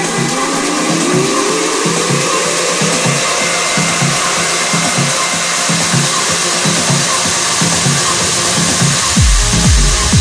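Electronic dance music in a breakdown: a thick noise wash builds, with a rising tone gliding up over the first few seconds, and the deep kick drum and bass are missing. About nine seconds in, the full kick and bass drop back in.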